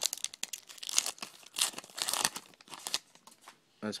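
Rustling and crinkling of trading cards and their wrapper being handled, in a run of short bursts that stops about three seconds in.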